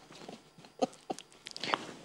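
A few short, quiet, stifled chuckles in a lull of talk, about a second in and again near the end.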